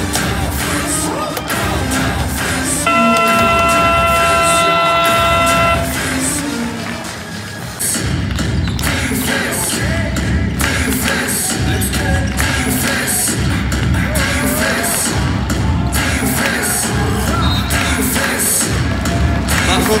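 Arena sound-system music with crowd noise at a basketball game. A few seconds in, a steady electronic horn tone sounds for about three seconds. From about eight seconds, the music runs with a steady beat of roughly one thump a second.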